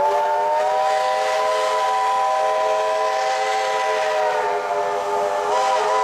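Steam whistle of the NSWGR AD60 class Beyer-Garratt locomotive 6029 blowing one long blast as the train departs. The pitch rises slightly as it opens, holds steady, wavers briefly near the end and then cuts off.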